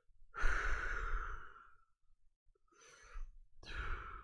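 A person sighing heavily into a microphone, one long breathy exhale about half a second in, then two shorter breaths near the end.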